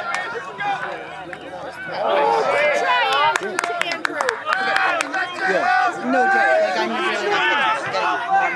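Several voices shouting and calling out over one another, with a quick cluster of sharp clacks about three to five seconds in.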